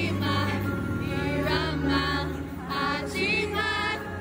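K-pop boy group member singing live through the arena sound system over sustained backing music, heard with the hall's echo from close to the stage. The voice moves in short sung phrases over steady held low notes.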